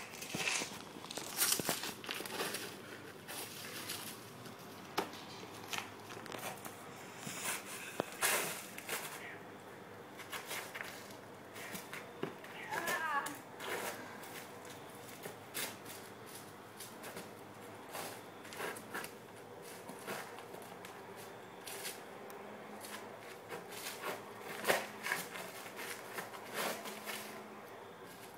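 Dry fallen leaves crackling and rustling under shuffling, stepping feet, as scattered short irregular sounds, with faint voices now and then.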